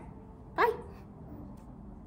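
A dog gives one short, high yip about half a second in; otherwise there is only quiet room tone.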